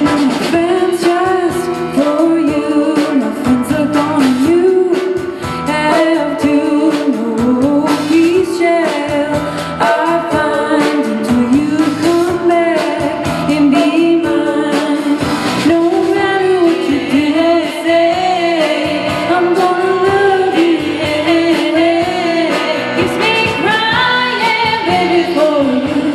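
Live rock band playing a song: electric guitar, electric bass and drums, with a woman singing the lead vocal.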